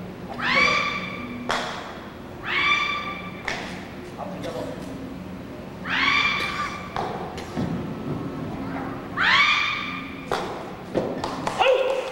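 Young taekwondo performers giving four high-pitched kihap yells, each rising in pitch and then held for about a second. Each yell is followed by a sharp crack as boards are broken, with a quick run of cracks near the end.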